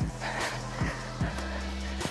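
Upbeat workout background music with a steady fast beat, about two and a half beats a second, over sustained bass notes.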